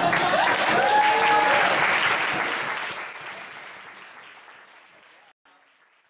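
Audience applauding at the end of a spoken-word poem, with one voice giving a held cheer in the first second or so; the clapping dies away over the last few seconds.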